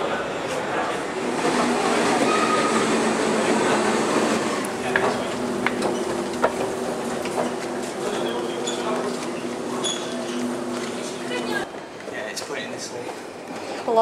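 Underground train noise in a station: a rumbling train, then a steady electric hum of several pitches that cuts off suddenly near the end.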